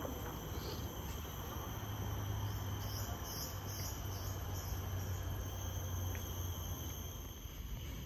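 Steady, high-pitched chorus of rainforest insects, with a short series of pulsed chirps about three seconds in.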